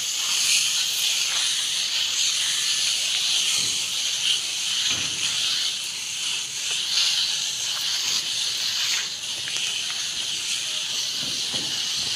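A steady high-pitched hiss that holds at an even level, with a few faint clicks.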